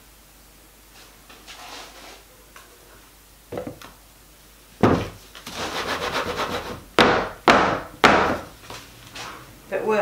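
Wooden soap loaf mould being jiggled and knocked against a wooden worktop to settle thick soap batter into it: about halfway in, a quick wooden rattle, then three loud knocks about half a second apart.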